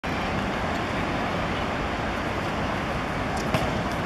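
Steady outdoor background noise, a broad rumble and hiss, with one sharp knock about three and a half seconds in.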